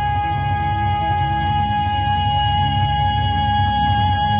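A male singer holding one long, high note through a microphone and amplifier, unbroken through the whole stretch, over backing music.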